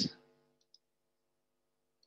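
The end of a man's spoken word, then near silence with a faint steady hum and one faint, short click about three quarters of a second in.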